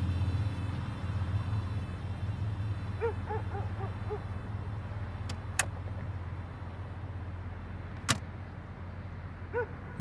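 Car engine idling with a steady low hum, broken by a couple of sharp clicks around the middle and near the end.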